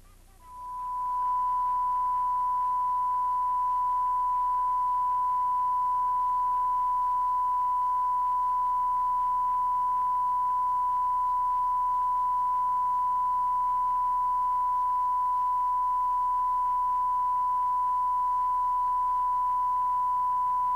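A TV station's off-air test tone: one steady, unwavering beep sent with the colour bars. It rises in about half a second in, reaches full level within a second and then holds at the same pitch and loudness.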